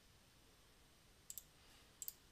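Near silence, broken by a computer mouse clicking twice in quick succession about a second and a half in.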